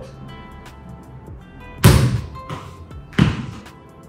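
A football bouncing with a hard thud on a tiled floor about two seconds in, then a second, slightly softer thud just over a second later, over steady background music.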